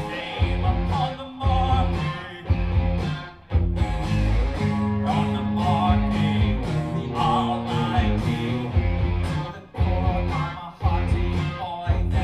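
Live rock band playing a song on electric guitar, keyboards and drums, with brief breaks in the beat.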